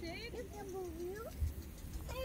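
A high-pitched voice talking, its words unclear, gliding up and down in pitch for the first second or so, then fading out.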